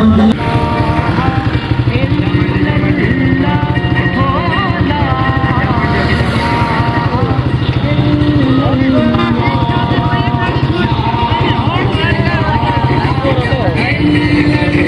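Many small motorcycle engines running close by in a procession, a steady, dense engine chatter, with voices or chanting over them.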